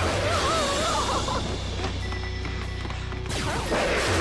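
Sci-fi teleport sound effect: a rushing burst with a warbling tone in the first second, then another rush near the end, over a low music score.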